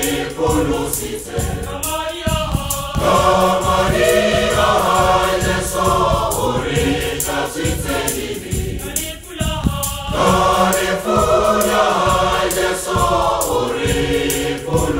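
Church choir singing a gospel hymn in harmony, with a steady beat underneath.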